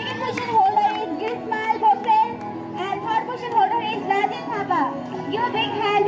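Many children's voices chattering and calling over each other, with music playing underneath.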